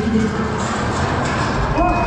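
Dramatic soundtrack music from a ride pre-show's sound system. A deep rumble comes in about a second and a half in, and a thin steady high tone starts just before the end.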